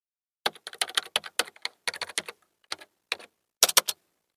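Computer keyboard typing: a run of irregular keystroke clicks starting about half a second in, ending with a quick flurry just before the end.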